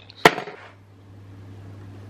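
Crown cap of a glass beer bottle prised off with a bottle opener: one sharp pop about a quarter of a second in, followed by a short hiss.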